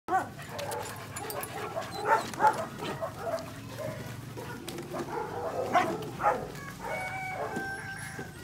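A group of puppies playing, with repeated short yips and barks, loudest about two seconds in and again around six seconds.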